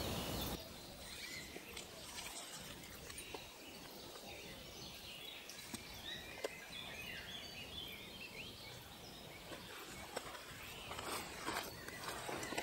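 Faint woodland ambience with small birds chirping softly. A few soft rustles come near the end.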